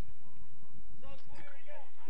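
Faint calls from players' voices carrying across a football pitch, a few short shouts near the middle, over a steady low rumble.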